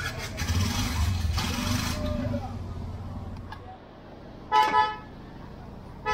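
Street traffic: a motor vehicle rumbles past close by for the first couple of seconds. Then a vehicle horn gives two short, loud toots about four and a half seconds in.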